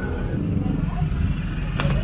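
Steady low rumble of street traffic with motorbikes passing, under faint voices; background music fades out in the first half second, and there is a sharp click near the end.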